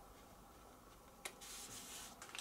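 Near silence, then about a second in a light click followed by a short rustling rub, as a hand slides a piece of card across paper.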